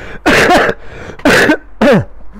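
A man laughing hard: three loud, breathy bursts, each falling in pitch.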